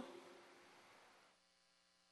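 Near silence: a faint, steady electrical hum. The room's background hiss fades out about a second and a half in.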